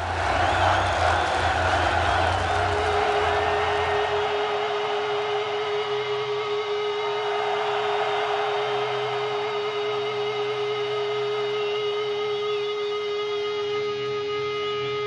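A large concert crowd cheering and whooping, dying down after about four seconds, while a single electric guitar note rings out and is held steadily through the rest.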